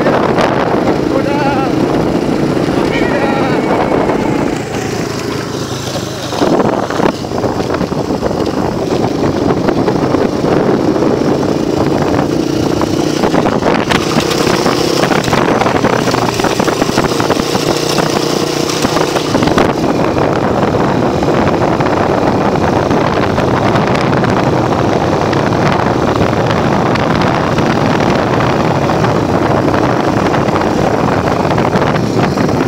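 1993 Honda XR200R's single-cylinder four-stroke engine running steadily as the bike rides along a dirt road, with wind on the microphone. The sound dips briefly about five seconds in, and a thump comes about six seconds in.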